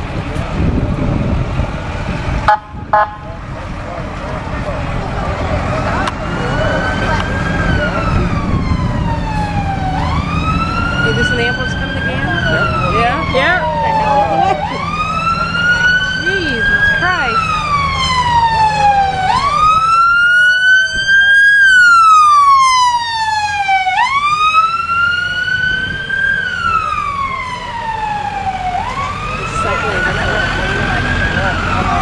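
Ambulance siren wailing, each cycle rising quickly and falling slowly about every four and a half seconds, growing louder and loudest about two-thirds of the way through. A sharp thump about two and a half seconds in, with a low vehicle rumble under the first part.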